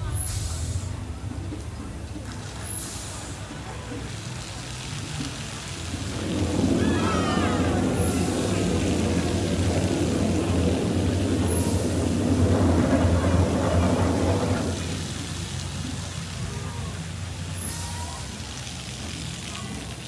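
Water gushing from a water tower onto wet pavement, splashing, starting about six seconds in and dying away about nine seconds later.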